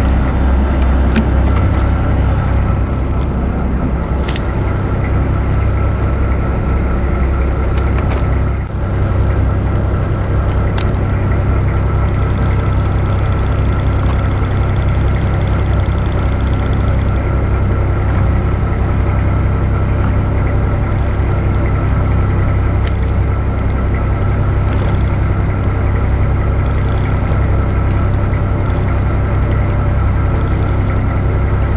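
A fishing boat's engine running steadily: a low hum that stays at an even level, with a few short clicks over it.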